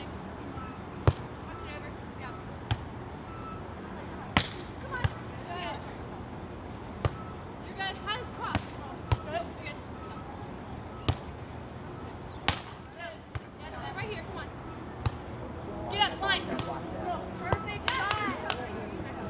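Beach volleyball rally: about eight sharp slaps of hands and forearms on the ball, spaced one to three seconds apart.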